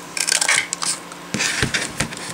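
Handheld craft paper punch cutting a medallion shape out of cardstock: crisp clicks and crunching in two short bouts, the second ending in a dull knock.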